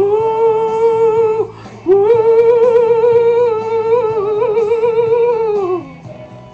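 A man singing long held notes without words over a karaoke backing track. The first note breaks off after about a second and a half; a longer note with vibrato follows and slides down near the end.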